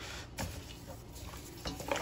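Gloved hands handling spice-rubbed beef ribs in a stainless steel bowl: faint rubbing and handling noise with a few soft knocks.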